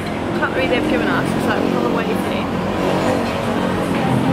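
Voices of people talking over a steady, dense background din of a busy dining place.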